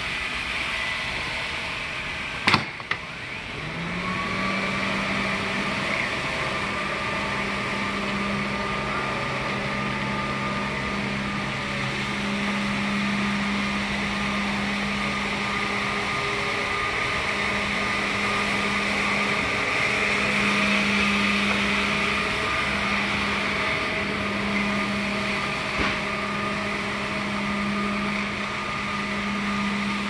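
Tennant T5 walk-behind floor scrubber running: the steady whine of its vacuum and motors. A sharp click about two and a half seconds in, then a lower hum swells in and holds steady to the end.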